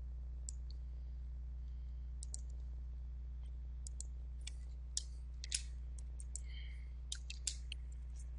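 Computer mouse clicks and keyboard keystrokes, scattered and irregular, coming more often in the second half, over a steady low hum.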